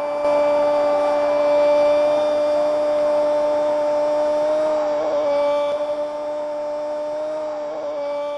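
Football commentator's drawn-out goal cry: one long 'gooool' held at a steady pitch, wavering slightly about halfway through and again near the end, over stadium crowd noise.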